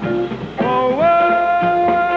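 Male baritone voice singing the last word of a jazz ballad, sliding up into a long held final note about half a second in, over a small jazz combo with vibraphone, double bass, saxophone and drums.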